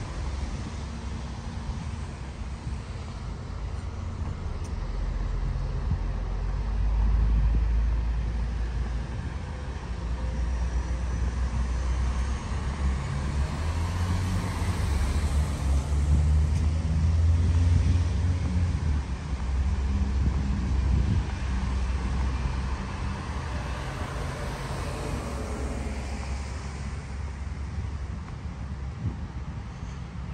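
Road traffic on a wet street: vehicles passing with tyre noise on the wet road surface, swelling and fading several times over a steady low rumble.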